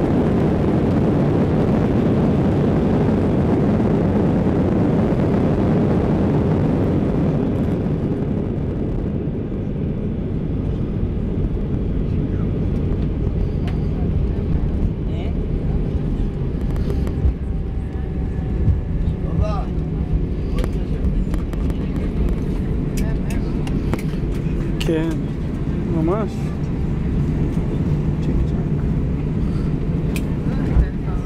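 Jet airliner's cabin noise on the landing rollout: a loud roar from the underwing turbofan engines and the wheels on the runway, easing to a lower steady rumble about eight seconds in as the plane slows. Passengers' voices and small cabin clicks come through over the rumble later on.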